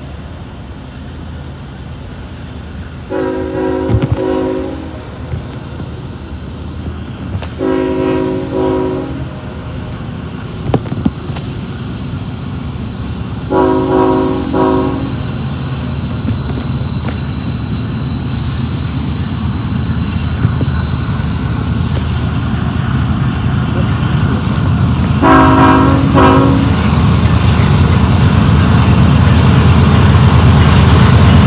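Multi-tone air horn of an approaching BNSF diesel freight locomotive sounding four blasts, the third shorter than the others. Under the blasts the rumble of the train's diesel engines builds steadily as it draws near and is loudest at the end.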